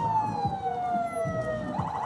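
Vehicle siren wailing in one long, steady fall in pitch, with a faster warbling siren sound starting near the end, over low street noise.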